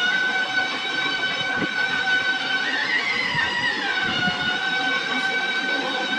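Music from an old wedding video playing on a TV: one long high held note, rising briefly near the middle and settling back.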